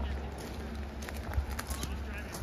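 Footsteps crunching on a gravel road, a few irregular steps, over a steady low rumble on the microphone.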